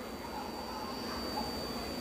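Low background ambience of a seated crowd under a tent during a pause in a preacher's amplified sermon, with a faint steady high-pitched whine.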